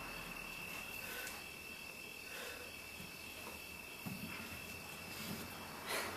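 A faint steady high-pitched trill, most likely a cricket, over quiet room hiss. Two soft low thuds come about four and five seconds in.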